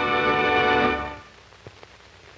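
Closing theme music of a 1950s TV series ending on a held chord, which dies away about a second in. Faint hiss and a couple of soft clicks follow.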